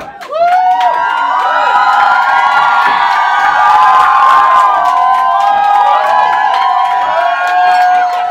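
Audience cheering and screaming, many high shrieks and whoops overlapping, breaking out loudly about half a second in and staying loud.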